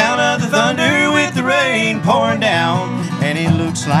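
Acoustic country duet: a man's voice singing the chorus line over strummed acoustic guitar, with a resonator guitar (Dobro) playing slide fills.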